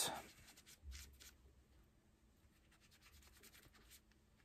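Faint rubbing of a cloth working paste wax into a sanded wooden sculpture base, with a few soft scuffs in the first second or so, then almost silent.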